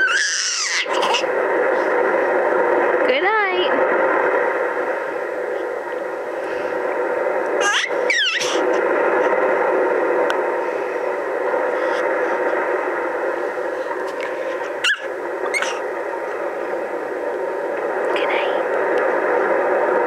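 A four-month-old baby's short, high-pitched squeals and squawks, a handful of separate ones with wavering pitch, over a steady background hiss.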